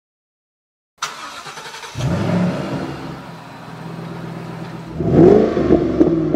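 Supercharged V8 of a 2011 Shelby GT500 Super Snake idling. The sound comes in about a second in, and the engine is revved once near the end, its pitch rising and falling back.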